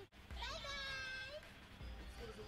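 A single high, drawn-out call from the film's soundtrack, about a second long, rising at its onset, over a faint low rumble.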